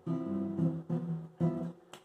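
Acoustic guitar playing a chord three times, each ringing for about half a second, the last cut short: the suspended fourth on the fifth-degree chord (G in C major) resolving back to the major third.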